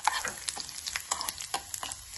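Oil sizzling in a small steel pan as a tempering of dried red chillies, lentils and seeds fries. A steel spoon stirs it, with irregular sharp clicks throughout.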